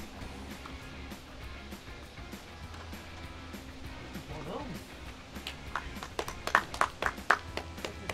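Quiet background music with a steady low beat. From about five and a half seconds in, hands clap in quick, uneven succession.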